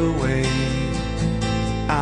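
Background music: a rock song with strummed acoustic guitar.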